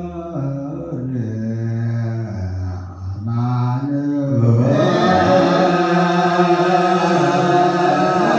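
Ethiopian Orthodox Mahlet chant: a group of male clergy singing a slow, drawn-out liturgical chant with long held notes that glide between pitches. About four and a half seconds in, the chant swells louder and brighter.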